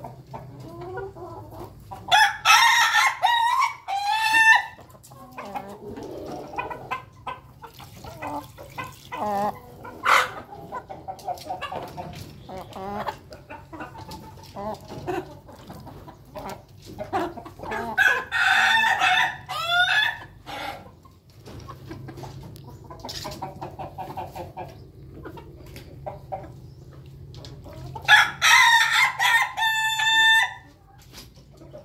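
Roosters of an ayam ketawa and Bangkok crossbred flock crowing three times, each crow a long run of quick syllables lasting about two and a half seconds: near the start, in the middle and near the end. Hens and other chickens cluck and call quietly between the crows.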